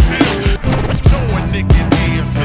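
Hip hop backing track with a steady drum beat, about two kicks a second, and no rapped words.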